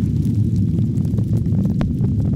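Falcon 9 first stage's nine Merlin engines running at full thrust during ascent: a loud, steady, deep rumble with scattered crackles.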